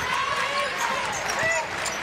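Arena sound during live basketball play: a ball being dribbled on the hardwood court over a steady crowd murmur.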